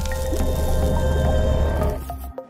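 Logo-intro music with a held low bass note, overlaid with a wet, splashy sound effect that stops near the end.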